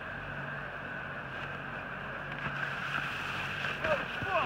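Ski rope tow running: a steady mechanical hum and whir of the moving tow rope, with some wind on the microphone.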